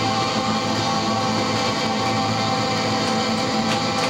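Live rock band playing with electric guitar, a dense, sustained sound at steady loudness, recorded through a camcorder's microphone in the room.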